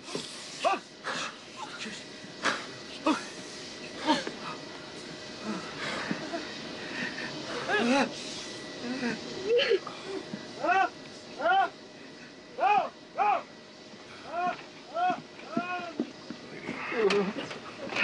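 A person crying out in a series of short, rising-and-falling wailing sobs through the second half, with scattered knocks and scuffling before them.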